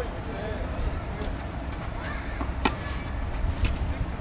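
Outdoor tennis court ambience: distant voices over a low steady rumble, with a few sharp tennis-ball hits off racket strings, the loudest about two and a half seconds in.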